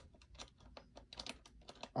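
Faint, irregular light clicks and ticks, several a second.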